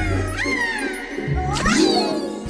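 A cartoon character's high, squeaky gleeful cry in two swooping calls, the second rising sharply near the end, over background music.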